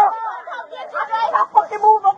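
Speech: several voices talking over one another, with words too jumbled to make out.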